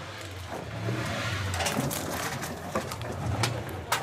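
Plastic bottles, bags and sacks of collected scrap rustling and clattering as they are rummaged through and sorted by hand, with scattered sharp clicks, over a low steady hum.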